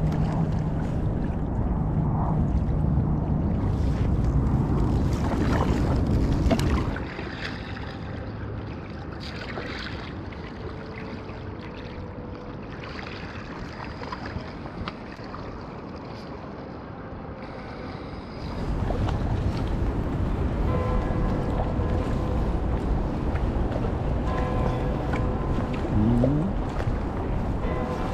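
Kayak paddling on calm water: paddle blades dipping and splashing, with low wind rumble on the microphone. It is louder for the first quarter and again from about two-thirds in, quieter in between.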